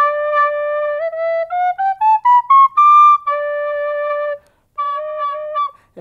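Tin whistle in D playing a D major scale: it holds the low D, climbs note by note up an octave to the high D, then drops back to the low D and holds it, sounding it once more after a short break near the end.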